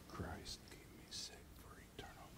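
Quiet whispered speech, the priest's private prayer said under his breath while receiving communion at the altar, with two hissing 's' sounds standing out.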